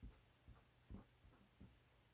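Faint scratching of a Sharpie fine-point felt-tip marker on paper: a few short, quick strokes about half a second apart, as eyebrow hairs are sketched.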